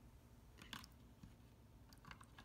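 Near silence, with a few faint small clicks from fingers handling a plastic toy toilet and the water in its bowl.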